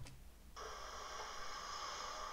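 A single click, then about half a second in a steady low hiss of background ambience begins: the sound track of raw outdoor video footage playing back.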